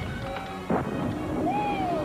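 Movie soundtrack of a spaceship's turbo boost firing. Music plays, then a sudden rushing rumble sets in about two-thirds of a second in, as the ship lurches into acceleration.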